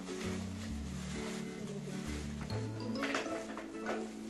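Background music with a low bass line stepping to a new note about every half second.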